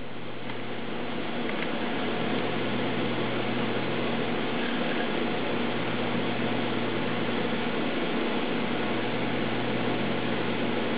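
Steady whirring hiss with a faint low hum, building slightly over the first couple of seconds and then holding even.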